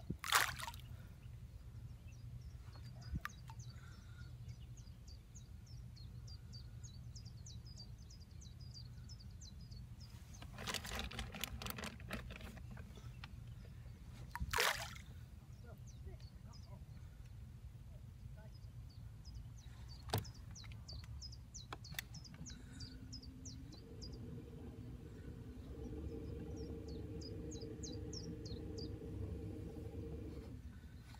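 Handfuls of maize thrown into the lake, splashing onto the water just after the start and again about halfway through, with a rustle before the second throw. Birds chirp on and off over a steady low rumble, and a low steady hum comes in after about two thirds.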